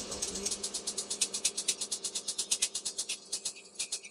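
Quiet hip-hop beat stripped down to a fast, even hi-hat pattern, several ticks a second, over a faint sustained pad, with no kick or bass under it.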